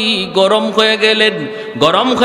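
A man chanting a sermon in a sung, melodic voice, holding long notes. His pitch sinks low about a second and a half in and climbs again near the end.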